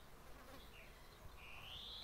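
Near silence among trees, with a faint high bird call: a short note, then a longer whistle about halfway through that rises in pitch.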